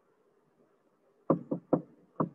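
Near silence, then a quick run of three sharp knocks about four a second, starting past halfway.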